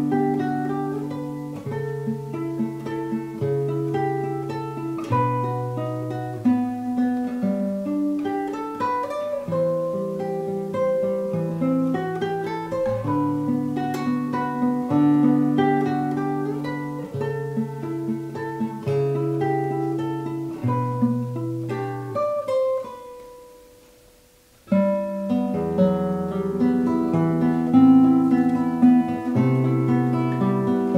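Solo spruce-top Ramirez SPR classical guitar played fingerstyle: a flowing line of plucked notes over bass notes. About 23 seconds in, the notes die away almost to silence for about a second and a half, then the playing resumes with low bass notes.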